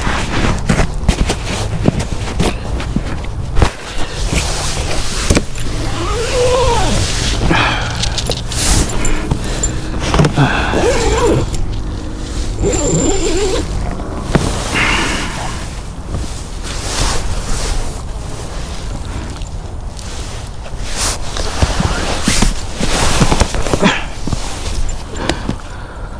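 Nylon hammock fabric and clothing rustling and shifting as a person struggles to climb out of a camping hammock, with irregular knocks and handling noise close to the microphone.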